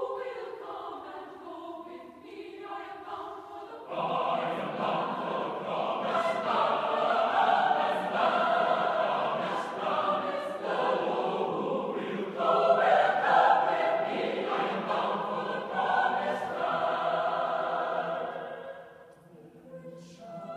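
Mixed choir singing unaccompanied in a reverberant concert hall. The first few seconds are softer and thinner; about four seconds in the full choir comes in louder, with the low voices joining, and holds until the phrase dies away near the end.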